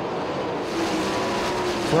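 410 sprint cars' V8 engines running at racing speed, a steady engine drone that grows clearer about two-thirds of a second in.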